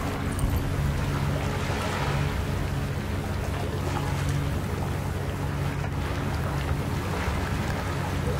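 Seaside ambience: small waves on the shore and wind on the microphone, over a steady low hum.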